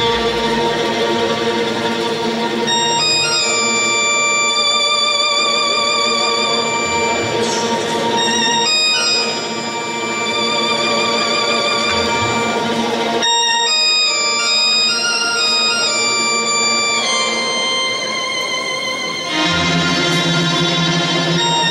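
Arabic orchestra playing, with sustained string melody lines with vibrato over accordion and oud, starting abruptly at the beginning. It swells steadily with two brief dips, about nine seconds in and near the end.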